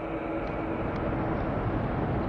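A pause in a man's speech filled by a steady hiss and rumble: the background noise of an old lecture recording, with nothing changing in it.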